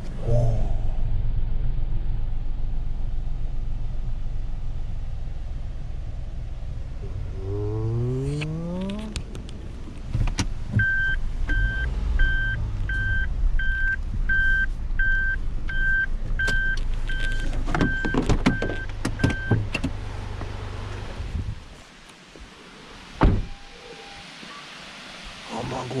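Suzuki Jimny JB64's 660 cc turbo three-cylinder engine idling, and a power window motor runs for about a second and a half a third of the way in. A warning chime then beeps about twice a second for around nine seconds, with clicks near its end. The engine shuts off a little over 21 seconds in, followed by a single thump.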